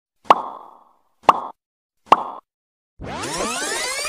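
Three mouse-click sound effects from a subscribe-button animation, each a short sharp click with a brief tail, about a second apart. About three seconds in, a loud electronic transition effect begins, with many tones sweeping up and down at once.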